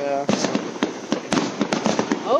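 Aerial fireworks going off: many sharp, irregular pops and cracks. A voice is heard briefly near the start.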